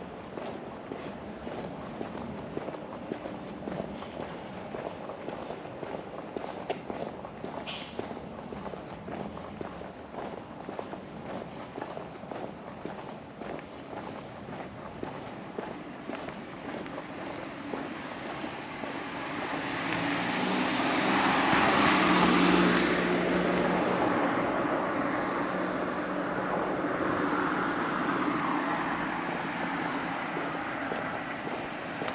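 Footsteps on an asphalt street, then a car drives past, growing louder to a peak about twenty-two seconds in and fading away. A quieter vehicle follows near the end.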